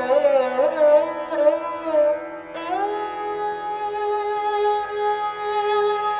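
Indian classical instrumental music: a plucked string instrument over a steady drone. A note is struck about two and a half seconds in, and the melody slides in pitch between notes.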